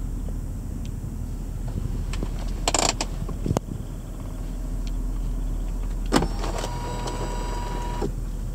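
BMW Z4 3.0i inline-six idling steadily, heard from inside the cabin. There is a short hissy rustle about three seconds in and a couple of clicks. Just after six seconds a sharp click starts a steady electric whirr, like a power-window motor, that runs to the end.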